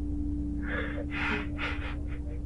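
A man crying, drawing three or four quick gasping breaths in a row about two-thirds of a second in, over a steady low hum inside the car.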